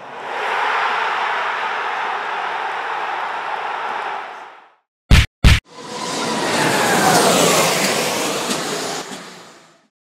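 Intro sound effects: a large crowd cheering for about four and a half seconds, two sharp hits, then a swelling whoosh with falling pitch sweeps that fades away.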